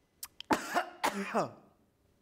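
A man coughs and clears his throat about half a second in, then lets out a voiced sigh that falls in pitch.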